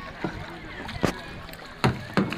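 Water slapping against a boat's hull: three sharp splashes about 0.8 s apart, the last two the loudest, over a low steady wash of water and wind.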